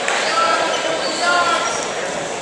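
Voices calling out in a large gym with echo, with short squeaks of wrestling shoes on the mat as two wrestlers tie up and shoot.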